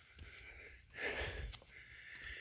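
Quiet outdoor air, with a soft breath close to the microphone about a second in and a faint low rumble of wind on the microphone.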